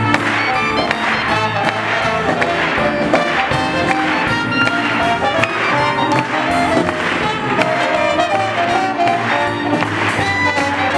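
Live Dixieland jazz band playing: trumpet and trombone over drums and upright bass, with a steady beat.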